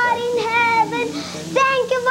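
A young girl praying aloud in a high, drawn-out, sing-song voice, holding each cry and letting it bend and break before the next.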